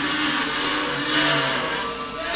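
A roomful of plastic kazoos buzzing a slow tune together, with plastic maracas shaking a rattling rhythm over it.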